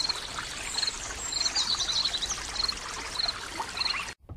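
A stream running, a steady rush of water, with a high short chirp repeating about every three-quarters of a second and a brief bird song in the middle.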